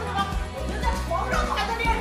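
A woman speaking in Mandarin over background music with a steady low bass.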